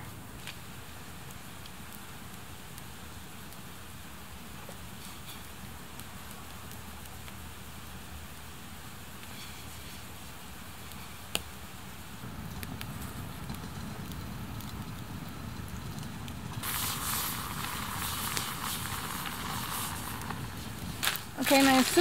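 Campfire burning with a steady hiss and faint crackling, one sharp crack about eleven seconds in. The hiss grows louder in the second half, loudest for a few seconds near the end.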